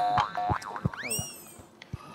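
Cartoon-style boing sound effect added in editing: a springy tone whose pitch shoots up and then falls back about a second in, among a few short clicks.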